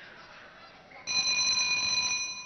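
Boxing ring bell ringing with one steady metallic tone, starting about halfway through and held for over a second, signalling the next round to begin.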